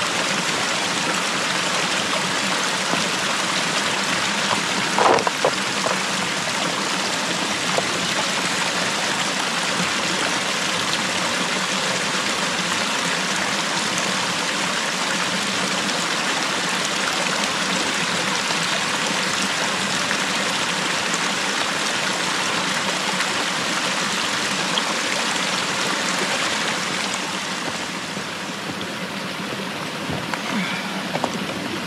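A small mountain stream runs and splashes over rocks in a steady, unbroken rush of water. There is one short, sharp sound about five seconds in, and the water is a little quieter over the last couple of seconds.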